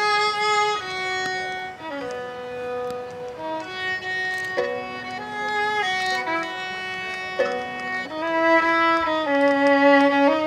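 Solo violin, bowed, playing a slow melody of long held notes that step from one pitch to the next.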